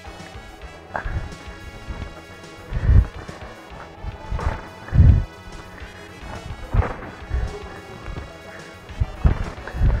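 Muay Thai shin kicks landing on bare legs: a series of heavy, dull smacks, irregularly spaced as two men trade kicks, the loudest about three and five seconds in. Background music plays under them.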